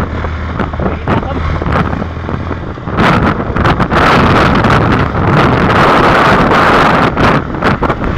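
Engine hum of a moving vehicle with wind rushing and buffeting on the microphone; about three seconds in the wind noise jumps much louder and crackles, drowning the engine.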